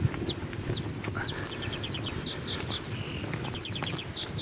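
A small songbird singing: a few high falling whistled notes about two a second, then quick runs of short notes mixed with steeper falling notes, over a low rumbling background noise.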